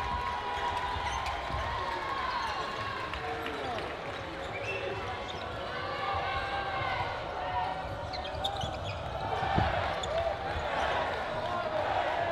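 Busy sports-hall ambience: indistinct voices from players and spectators, short squeaks of shoes on the wooden court floor, and a single thump about nine and a half seconds in, probably a ball hitting the floor or a wall.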